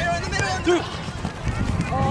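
Short, scattered shouts and calls from people around a youth soccer field, over a steady low rumble.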